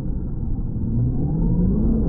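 Traxxas X-Maxx RC monster truck's brushless electric motor and drivetrain on 6S power, heard slowed down: a low drone whose pitch rises through the second half.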